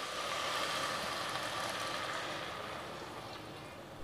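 Okra sizzling in a hot steel pot as tamarind water is poured over it, a steady hiss that slowly dies down.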